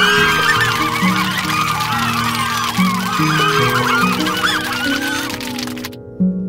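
A dense chorus of many overlapping bird calls, like a flock, laid over soft plucked harp-like background music. The calls start and cut off abruptly.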